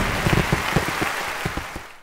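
Audience applause, a dense patter of many hands clapping, fading out near the end.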